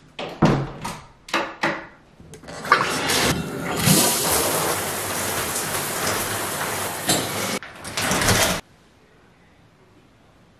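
A few sharp clicks and knocks of a door latch and door being opened, then a steady rush of shower water spraying for several seconds, which cuts off abruptly near the end.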